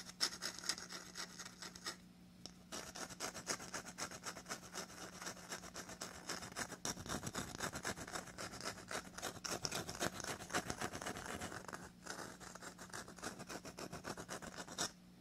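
Rapid, continuous scratching and rubbing on a hard shell, with a short pause about two seconds in.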